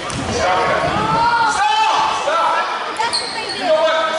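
A basketball being dribbled on a hardwood gym floor, with people's voices carrying through the hall at the same time.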